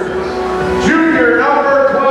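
A drawn-out, gliding voice over a gymnasium's loudspeakers, stretched and echoing like a player introduction.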